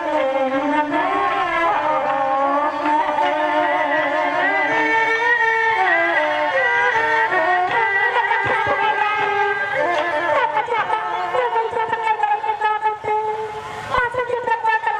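A woman singing a lakhon basak (Khmer Bassac opera) vocal line into a microphone, her voice wavering and heavily ornamented, over instrumental accompaniment; a few short percussive strokes come in near the end.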